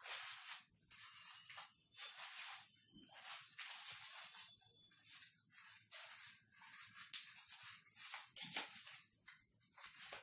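Faint, irregular rustling and crinkling of a folding umbrella's fabric canopy being folded and wrapped up by hand, in a run of short rustles with brief pauses.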